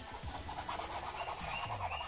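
Paintbrush scrubbing acrylic base colour onto a stretched canvas in quick, repeated back-and-forth strokes.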